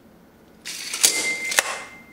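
Steel tape measure blade retracting into its case: a rising rattling rush with two sharp clicks and a steady metallic ring.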